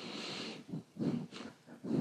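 A person's breath close to the microphone, then a few faint, short mouth sounds between spoken phrases.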